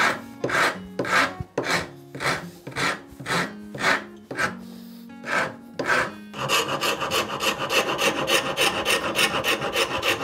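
Rasp and file strokes across a zebrawood plane-tote blank clamped in a vise. They start as separate scraping strokes about two a second, then from about six and a half seconds in become a quick run of short strokes, about five a second.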